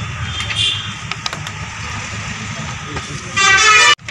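Street traffic noise, then near the end a loud vehicle horn honks once for about half a second and is cut off abruptly.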